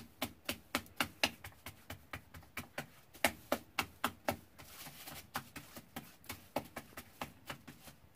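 Hands patting a ball of nixtamal masa flat on a plastic sheet to shape a thick memela: a quick, steady run of slaps, about four a second.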